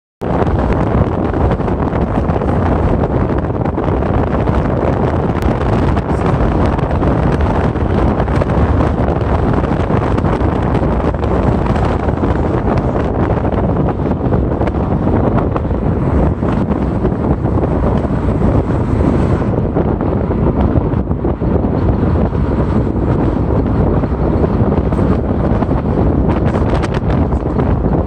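Steady wind buffeting the microphone over vehicle road noise. The sound is loud and heaviest in the low end, and its upper hiss eases off about two-thirds of the way through.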